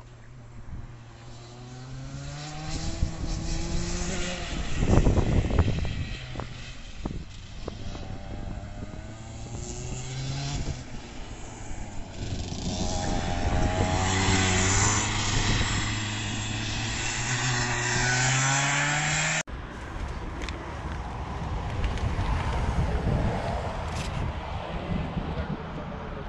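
Vortex ROK 125cc two-stroke kart engine revving up and down as the Tony Kart laps the circuit. It is loudest as the kart passes close about five seconds in. Later the revs climb steadily for several seconds before an abrupt cut, after which the engine is heard rougher and noisier.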